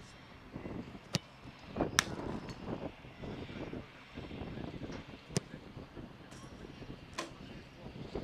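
A football being kicked hard on a grass pitch: four sharp strikes, the loudest about two seconds in, the others a little before it, past the middle and near the end.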